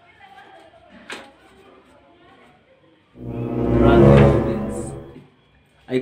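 A swelling musical sound effect that builds for about a second and then fades away over another second, preceded by a faint click.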